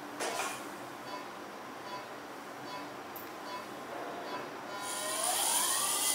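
Oertli Faros phacoemulsification machine's audible feedback tone coming on about five seconds in as the phaco handpiece starts working. A steady high whine sounds alongside a pitched tone that rises and then falls slowly, its pitch tracking the aspiration vacuum.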